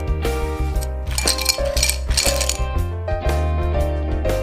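Ice cubes clinking into a glass tumbler in two bursts, about a second and two seconds in, over background music with a steady bass line.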